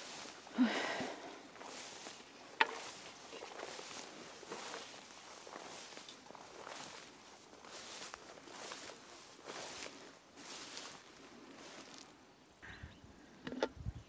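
Footsteps wading through tall meadow grass: a run of swishing rustles, about one a second, as the stalks brush past. A steady high insect hum runs behind it and drops away near the end.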